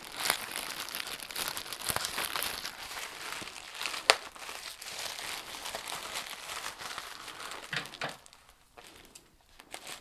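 Plastic poly mailer bag crinkling and rustling as it is handled and pulled open, with one sharp snap about four seconds in. The rustling drops away near the end, then starts again.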